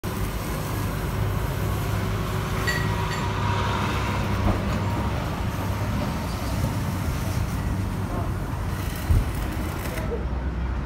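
Road traffic with a truck engine running steadily nearby, a continuous low hum under the street noise. There is a single short thump about nine seconds in.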